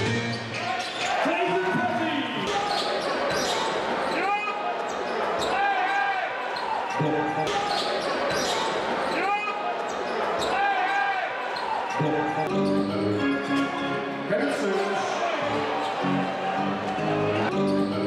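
Live game sound of a basketball game in a large hall: the ball bouncing and shoes squeaking on the hardwood court over crowd voices, with music in the hall, more prominent in the second half.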